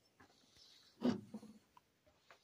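A man's brief low hesitation sound, a grunt-like 'mm', about a second in, between faint clicks of handling.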